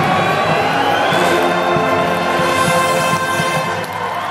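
Brass pep band of sousaphones, trombones and saxophones playing long held chords, with the high voices gliding upward in pitch through the middle.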